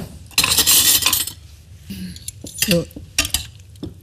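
Serving utensils scrape and clink against a pan and plate as sautéed asparagus and carrot pieces are dished out, with one dense scraping stretch of about a second near the start and lighter clinks after it.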